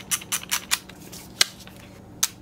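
Disposable film camera's thumbwheel being wound on to the next frame: a quick run of small plastic ratchet clicks in the first second, then one sharper click a little under a second and a half in.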